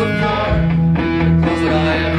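Live rock band playing an instrumental passage: electric guitar, electric bass and drum kit.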